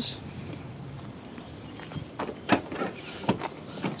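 Hatchback tailgate of a 2011 Alfa Romeo Giulietta being opened: a few short clicks and knocks of the latch and lid from about two seconds in, after a faint steady hiss.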